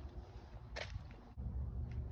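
Low, uneven rumble on the microphone with one short swish a little under a second in.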